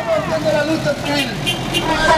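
Road traffic driving past close by, a light truck's engine running steadily as it passes, with a crowd of demonstrators' voices mixed over it.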